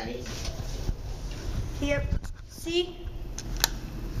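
Brief indistinct voices over a steady low hum inside a small room, with one sharp click about three and a half seconds in.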